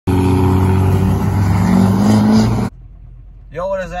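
Duramax turbo-diesel pickup engine revving hard on a drag strip, its pitch slowly climbing, then cut off abruptly about two and a half seconds in.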